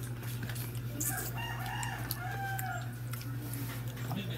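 A rooster crowing once: a single drawn-out, arching call of about two seconds, starting about a second in, over a steady low hum.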